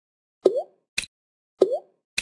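Interactive e-book's drag-and-drop sound effects as answer labels are picked up and dropped into their boxes. A short rising "bloop" pop comes about half a second in, a sharp click at about one second, and another rising bloop at about 1.6 seconds.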